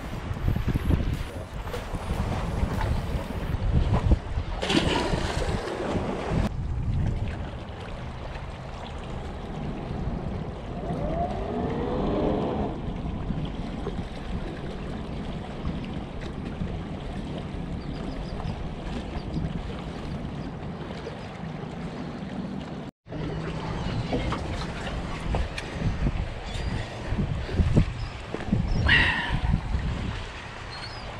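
Wind buffeting the microphone and water washing against jetty rocks. Through the middle there is the low, steady drone of a large sportfishing yacht's engines as it runs through the inlet.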